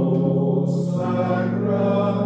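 A slow hymn sung in long held notes, the pitch stepping to a new note about every second.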